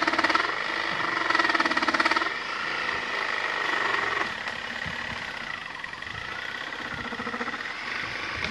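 An engine running steadily with a fast, even pulse, louder for the first two seconds and then settling a little lower.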